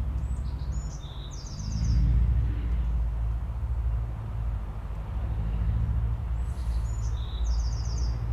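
A songbird sings the same short phrase twice, a few high notes ending in a quick trill, about a second in and again near the end. Under it runs a steady low rumble.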